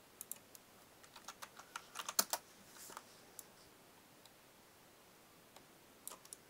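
Light clicks and taps of a computer keyboard and mouse, a scatter of them in the first three and a half seconds and one or two later.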